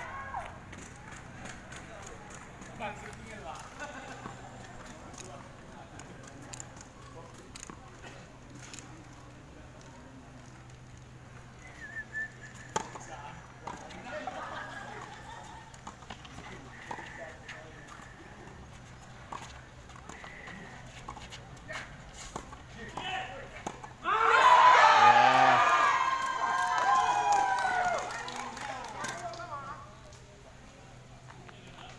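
Tennis balls struck by rackets and bouncing on a hard court during rallies, heard as scattered sharp pops. About 24 seconds in, loud human voices shout for around four seconds, the loudest sound.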